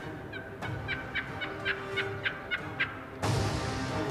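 Wild turkey yelping: a series of about eight short, evenly spaced notes, roughly three to four a second, over background music that swells louder near the end.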